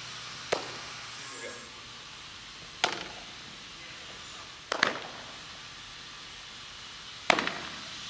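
Four sharp pops of a softball smacking into leather fielding gloves during catch-and-throw drills, echoing in a large indoor hall.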